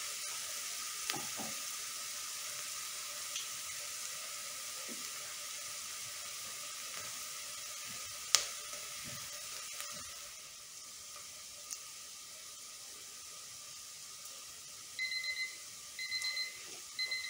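Diced onion and garlic frying gently in butter in a stainless steel pot, a soft steady sizzle with a few small ticks and one sharper click partway through. About a second before the end, a kitchen timer starts beeping in quick short bursts, signalling that the three-minute softening time is up.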